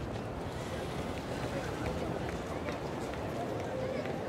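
Steady background noise of a busy city street: a constant hum of traffic and the indistinct voices of passers-by.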